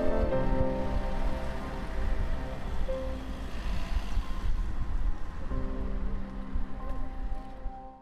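Background music with held, sustained notes over a low rumble, fading down near the end.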